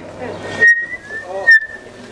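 Microphone and loudspeaker feedback: a single high whistle that starts about half a second in, dips slightly in pitch midway, rises again and stops just before the end. Two brief loud pops break it, a sign that the faulty microphone is being adjusted.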